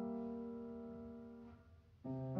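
Piano trio playing classical chamber music: a single held chord fades slowly away, almost to silence near the end.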